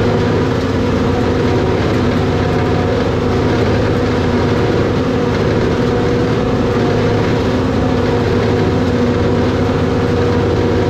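Forage harvester running steadily under load, picking up a barley swath and blowing chopped silage up its spout into a truck box: a loud, even machine drone with a constant hum.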